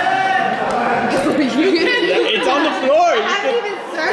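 Overlapping voices of several teenagers talking and exclaiming at once, opening with one drawn-out vocal cry, in a large echoing room.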